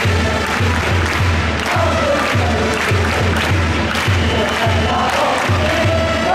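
Baseball cheering section chanting a batter's fight song in unison, driven by a drum beaten steadily about twice a second.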